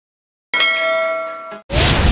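A bell-like ding sound effect: a metallic clang with several ringing tones that starts suddenly about half a second in, rings down for about a second, then cuts off. A short burst of hiss follows near the end.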